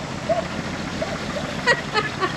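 A dog barking in a rapid, regular string of barks over the low running of a GMC P15 step van's 292 straight-six engine as the van drives slowly.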